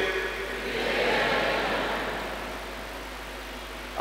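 A congregation answering together in many voices, a blurred swell of sound that peaks about a second in and then fades away. This is the assembly's spoken response to the greeting "Tumsifu Yesu Kristo".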